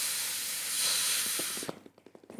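A steady hiss like escaping gas, which dies away near the end.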